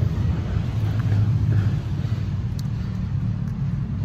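Steady low rumble with no speech over it.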